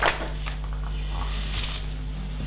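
A page of a paper instruction booklet being turned, with a short click at the start and a brief hiss near the end, over a steady low hum.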